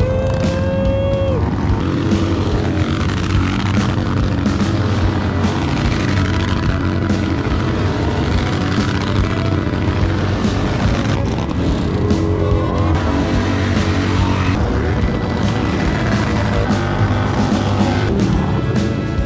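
Background music mixed over motorcycle engines revving and rear tyres spinning in burnouts.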